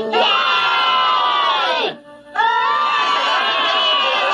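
A group of high cartoon voices shouting and cheering together in two long drawn-out cries, each falling in pitch at its end, with a short break about two seconds in.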